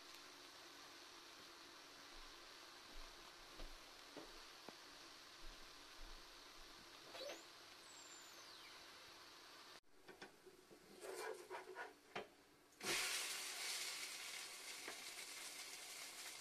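Blini batter sizzling faintly in a hot frying pan, with small pops. About ten seconds in come a few clicks and knocks, then from about thirteen seconds a louder, steady sizzle.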